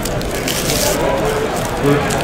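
2019 Topps Chrome baseball cards being flipped through by hand, the cards sliding and rustling against each other, loudest about half a second to a second in. Voices in the background.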